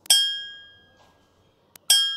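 A bell-like chime struck twice, about 1.75 seconds apart, each ringing clearly and fading away over about a second. It is typical of a workout interval timer counting down the end of an exercise set.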